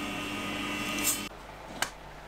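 SawStop table saw running with a steady hum and hiss while wedges are cut on a jig, with a harsher burst about a second in. The saw sound stops suddenly, and a single sharp click follows.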